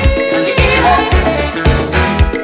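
A 1986 pop dance record playing, with a steady beat about twice a second under held melodic notes.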